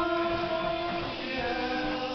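Several voices singing together, holding a long note, then moving to a new note about a second and a half in.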